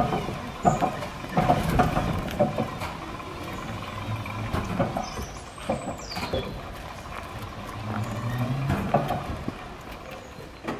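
A 1951 BUT 9611T trolleybus reversing slowly over cobbles: low running noise with scattered clicks and knocks, and a faint high squeal that rises and falls about five seconds in.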